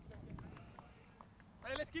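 Faint distant voices, then a man speaking close to the microphone near the end.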